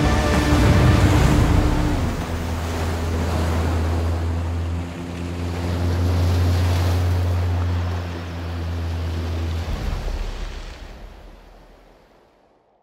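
Rushing water spray as a pickup truck drives through a shallow stream, swelling again midway, over a sustained low music chord. Both fade out near the end.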